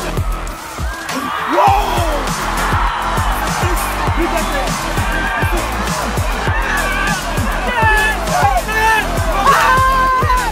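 Backing music with a steady thudding beat under the match sound of a goal celebration: crowd cheering and shouting voices, with raised voices clearest near the end.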